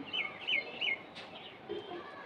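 A small bird chirping a quick run of about five short, high notes, each sliding downward, within the first second.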